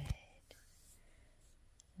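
Near silence: quiet room tone with two faint short clicks, one about half a second in and one near the end.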